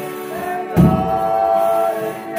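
Folia de Reis company singing a toada: several voices hold long notes in chorus over a button-and-keyboard accordion, with a single low thump about three-quarters of a second in.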